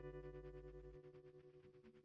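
The last chord of a rock song on an electric guitar through effects, ringing out and fading away with a fast, even pulsing.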